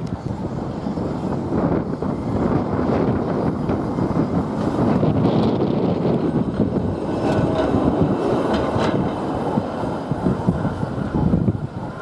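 Double-deck heritage tram passing close by on street track, its wheels rumbling and clattering over the rails, loudest in the middle as it goes past.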